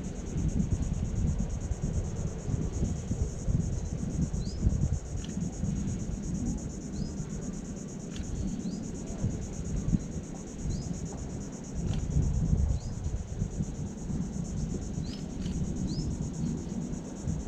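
Insects trilling steadily in a shrill, rapid pulse, with a few short, high rising chirps scattered through. A low, uneven rumble runs underneath.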